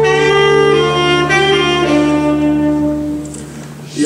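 Live band instrumental break with no vocals: a lead instrument plays a melody of long held notes over a steady low sustained accompaniment. It fades away in the last second.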